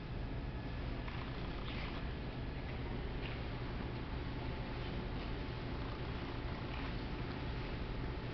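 Room tone of a large hall: a steady low hum with faint, scattered soft scuffs and rustles.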